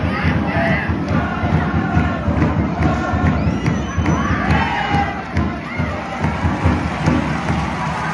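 Ice hockey arena crowd cheering and shouting, a steady roar with individual voices yelling over it and a few sharp knocks from the play.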